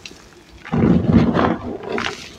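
Hands squeezing and crumbling dyed gym chalk, loose powder and small reformed chunks, in a plastic tub: a dense crunching, crumbling burst about a second long that starts under a second in, after a quieter stretch.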